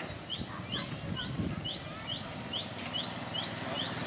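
A bird calling in a fast, even series of short, high, rising chirps, about three a second, over low outdoor background noise.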